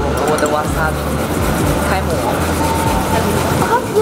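Busy dining-room ambience: overlapping background voices over a steady low hum.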